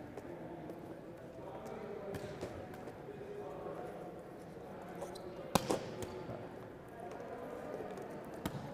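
A volleyball being struck by hand in a hitting drill, one sharp slap about five and a half seconds in, with a few fainter ball contacts around it, over a steady murmur of many voices in a large hall.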